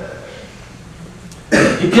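A man coughs once, loudly, into a handheld microphone about a second and a half in.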